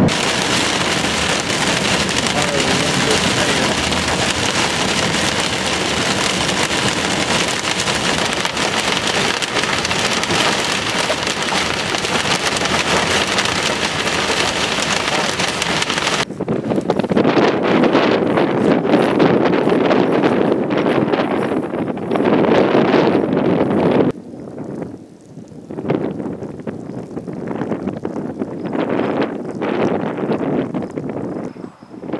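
Heavy rain pouring onto a car's roof and windshield while driving through a thunderstorm's rain core. About sixteen seconds in it cuts abruptly to gusting wind on the microphone, which drops lower and comes in uneven gusts for the last few seconds.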